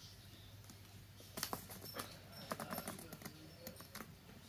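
A pink planner sticker being handled and pressed down onto a paper planner page by fingers: faint scattered crinkles and light taps that begin about a second and a half in.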